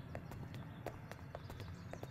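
Footsteps of several people walking on a hard floor, shoes clicking irregularly at about five steps a second, over a faint low hum.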